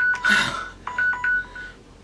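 Electronic timer alarm going off in several short two-tone beeps, signalling that the five minutes are up. A brief burst of noise comes about half a second in.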